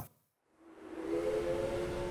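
A steady chord of several held tones fades in over a hiss about half a second in, and keeps sounding without change.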